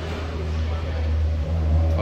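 Toyota Aqua (Prius C) hybrid's 1.5-litre four-cylinder petrol engine running steadily just after start-up, a low even hum with a brief dip about one and a half seconds in.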